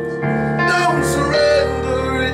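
A song played live, with held chords that change about a quarter second in and again near a second and a half.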